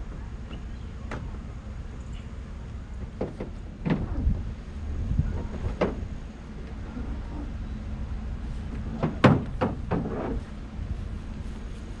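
Sharp metal clanks and knocks from trailer hitch hardware and ratchet straps being handled. One comes about four seconds in, another near six seconds, and a quick cluster of the loudest a little after nine seconds, over a low steady rumble.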